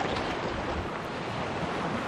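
Steady rush of wind and sea water moving past a sailboat under sail, with wind buffeting the microphone.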